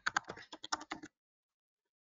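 Computer keyboard being typed on: a quick run of keystrokes entering a password, stopping about a second in.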